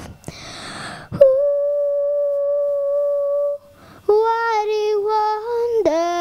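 A young girl singing unaccompanied into a microphone. After a short breathy pause she holds one long steady note, stops briefly, then sings a slower phrase whose pitch wavers and falls near the end.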